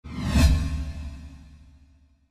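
End-card sound effect: a whoosh swelling into a deep bass boom about half a second in, then fading out over about a second and a half.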